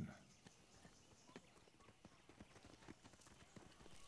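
Near silence: faint outdoor room tone with a few soft, irregular taps or clicks.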